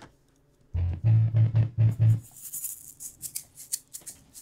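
A few loud strummed ukulele chords starting under a second in, followed by a shaker egg rattling in quick bursts.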